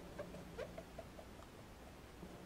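Faint quick dabbing of a round ink dauber on glossy cardstock: a run of soft pats, about five a second, that stops a little over a second in.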